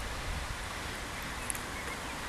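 Wind buffeting a microphone that has no windscreen, a steady low rumble under a soft hiss, with leaves rustling.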